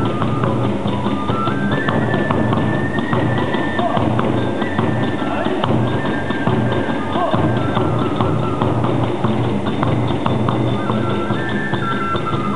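Live Hiroshima kagura accompaniment: a bamboo flute plays a stepping melody over fast, continuous drumming and clashing hand cymbals.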